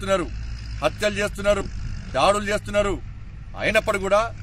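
A man speaking Telugu in a statement to camera, with short pauses between phrases. A steady low rumble runs underneath.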